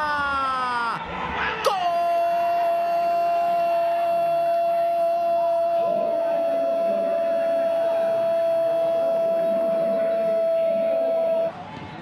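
A football commentator's long, held goal shout on one steady pitch, lasting about ten seconds, celebrating a penalty-kick goal. A falling vocal glide comes just before it, and fainter voices sound underneath in the second half.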